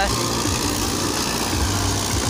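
Sonalika 60 tractor engine running steadily under load as it pulls a Dashmesh 8-foot super seeder working through the stubble.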